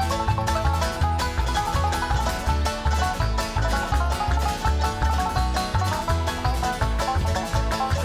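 Acoustic bluegrass band playing an instrumental break: picked banjo and mandolin over strummed acoustic guitar and upright bass, with a steady bass beat.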